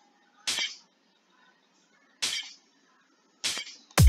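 Three single hi-hat sample hits from FL Studio, each sounded once as a note is clicked into the hat channel's piano roll: short bright hits that die away quickly, about half a second in, a little past two seconds, and near the end.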